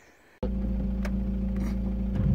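Volkswagen Golf Mk5 GT TDI's 2.0-litre four-cylinder diesel engine idling steadily, heard from inside the car's cabin. The low, even hum starts suddenly about half a second in.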